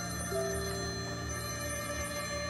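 A mobile phone ringtone for an incoming call, its high tones sounding in two spells, over soft background music.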